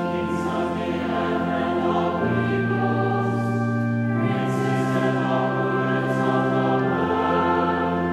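Church choir singing with pipe organ accompaniment, coming in right at the start. The music moves in held chords over steady bass notes that change about every two seconds.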